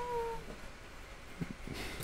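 A high, drawn-out vocal "yeah" held on one slightly falling note that trails off about half a second in, followed by quiet room tone with a couple of faint soft clicks.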